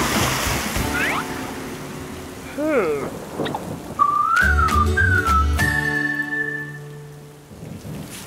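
Cartoon soundtrack: rain hiss with a few short wordless character vocal sounds in the first three seconds, then background music from about four seconds in, a high melody that slides up and down and then holds one long note over steady low notes, fading near the end.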